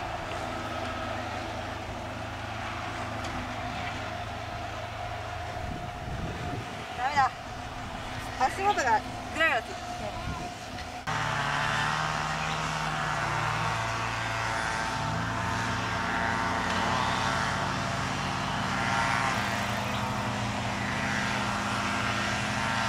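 A steady low mechanical hum like a running engine, which changes character abruptly about eleven seconds in, with a few brief bursts of voices or laughter between about seven and ten seconds in.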